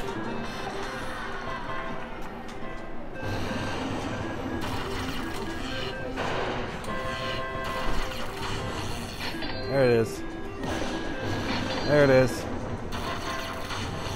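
Sahara Gold Lightning Cash slot machine playing its win-tally music and jingles as the win meter counts up. A voice calls out loudly twice near the end.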